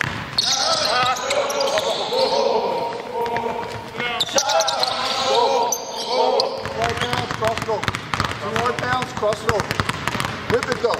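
Basketballs dribbled hard on a hardwood gym floor, the bounces coming fast and overlapping from about two-thirds of the way in as several balls are worked at once. Indistinct voices carry over the first part.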